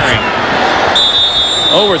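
Stadium crowd noise, then about halfway through a referee's whistle sounds one steady, high blast, blowing the play dead.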